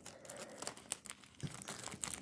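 Faint, scattered crinkling of a fast-food wrapper being handled, with a sharper crackle about one and a half seconds in.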